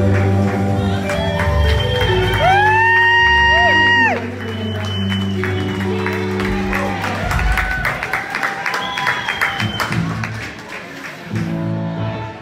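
Live country band of electric guitars, bass, keyboard and drums playing, with a long note that slides up and holds before the music drops about four seconds in. The audience then claps and cheers amid some talk, and the band starts playing again near the end.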